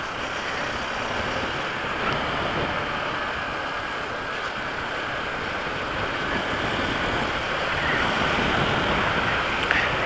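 Steady rush of wind and road noise from a motorcycle riding along a paved highway, with no engine note standing out; it grows slightly louder in the second half.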